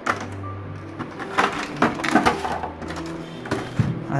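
Plastic packaging being handled: a scattering of sharp clicks and rattles from a clear plastic box and its moulded plastic insert tray.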